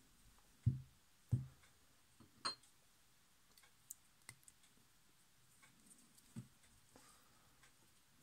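Faint handling noises from a plastic oil syringe and a sewing-machine handwheel being handled over a workbench: two soft knocks about a second in, then a few scattered light clicks.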